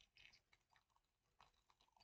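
Near silence with faint, irregular little crackles and clicks as a dried charcoal peel-off mask is picked and pulled off the skin around the mouth.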